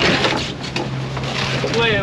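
A boat's engine humming steadily under the handling noise of wahoo and ice being shifted in a fiberglass fish box on deck, loudest right at the start. A man's voice comes in near the end.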